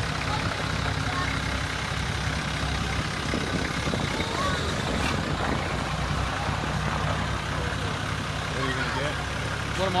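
A 4x4 truck's engine idling steadily, low and even, with faint crowd chatter behind it.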